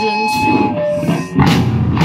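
Punk rock band playing live: distorted electric guitar, bass guitar and drum kit, with a loud accented hit about one and a half seconds in.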